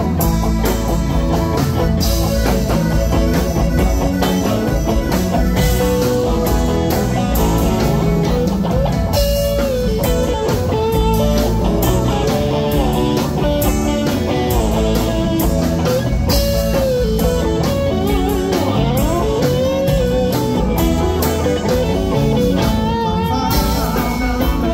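Live rock band playing an instrumental passage: a lead electric guitar line with bent, gliding notes over drums and bass.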